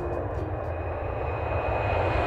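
Jet airliner in flight heard from inside the cabin: a steady rushing noise of engines and airflow with a thin high whine running through it, growing louder toward the end.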